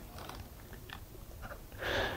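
Quiet studio room tone with a few faint rustles and light clicks, and a short hiss near the end.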